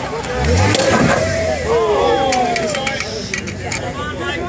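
A lifted Jeep's engine revs briefly, rising in pitch about half a second in, as it sits on top of the car it is crushing. Spectators shout over it.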